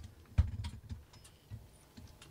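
Handling knocks and clicks as a handheld camera is moved and bumped while floating through a hatchway: one sharp thump about half a second in, then a few lighter clicks.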